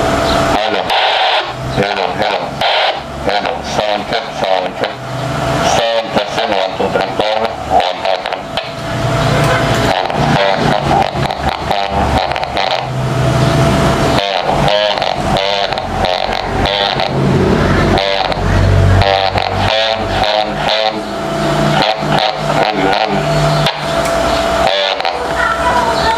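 Voice heard over a radio link from an Icom IC-28H transceiver with a transmit audio fault: the speech comes through distorted, choppy and not clean, too garbled to make out words. The uploader puts the fault down to the pre-amp.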